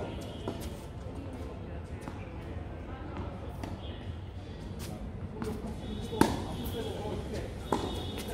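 Tennis ball being hit back and forth with rackets on an outdoor hard court: a few sharp pops in the second half, the loudest about six seconds in.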